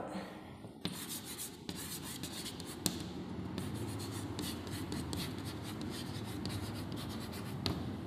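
Chalk writing on a chalkboard: a run of quick scratchy strokes with a few sharper taps as the chalk meets the board.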